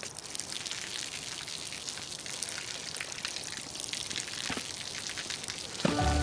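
Falling water pattering and splashing in a dense, steady run of drops.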